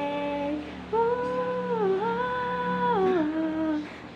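A young woman's voice singing without words on long held notes: one note ends about half a second in, then a new note starts about a second in, dips and comes back, and steps down lower near three seconds before fading out just before the end.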